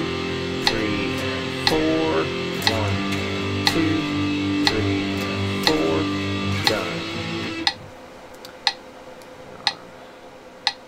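Electric guitar strumming a power-chord exercise (A5, G5, F5, G5, A5) in time with a metronome clicking once a second at 60 beats per minute. The guitar stops about three-quarters of the way in, leaving the metronome clicks alone.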